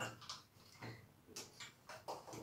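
Faint, irregular light taps and clicks, about six in two seconds, from a plastic doll being handled against a chrome bathtub tap.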